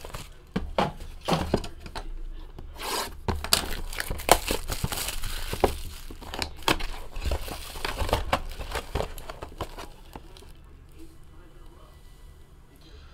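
Plastic wrap on a trading-card box crinkling and tearing as the box is opened and handled, a busy run of crackles and rustles that dies down near the end.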